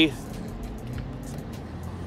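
Steady low hum of a car, heard from inside the cabin.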